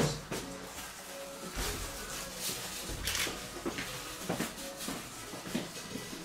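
Faint background music, with scattered soft clicks and rustles over it.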